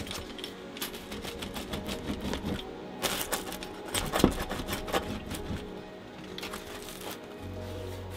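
Pizza wheel cutter rolling and pressing through a crisp, charred pizza crust, giving dense crackling crunches with louder bursts about three and four seconds in, over soft background music.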